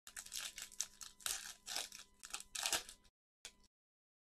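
Trading-card pack wrapper torn open and crinkled by gloved hands: a run of uneven crackling rips for about three seconds, then one short crinkle.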